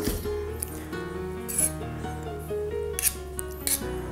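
Soft background music, with a few short scrapes of a metal palette knife drawing cream across the top of a steel cake ring.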